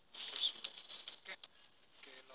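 Paper rustling as a hand moves over a newspaper page, loudest about half a second in and dying away after about a second and a half.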